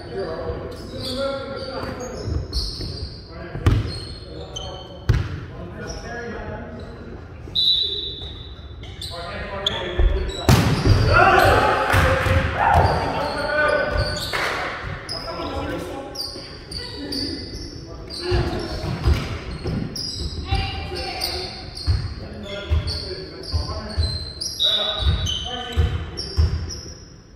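Volleyball rally in a large gym hall, its sound echoing: repeated thuds of the ball being hit and landing, short high squeaks of sneakers on the wooden floor, and players calling out. About ten seconds in, the players break into loud shouting for a few seconds as the point ends.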